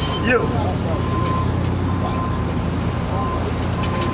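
Street traffic with a vehicle engine running, a steady low hum, under faint voices.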